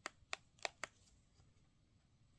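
Four quick, sharp clicks of keys pressed on an iPazzport mini wireless keyboard, all within the first second: the Function-key combination pressed to toggle the touchpad sensitivity.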